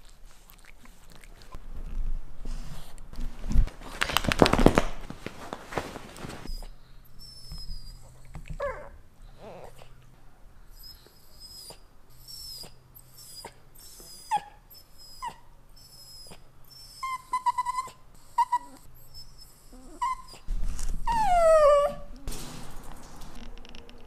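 Italian greyhound whining and whimpering in many short, high-pitched cries, ending with a longer cry that falls in pitch near the end. A few seconds of rustling noise come before the cries start.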